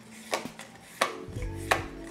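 Yu-Gi-Oh trading cards being flipped through by hand, each card sliding to the back of the stack with a sharp click, three times about two-thirds of a second apart.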